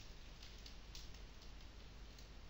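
Near silence: faint room tone with a few faint clicks between about half a second and a second and a half in.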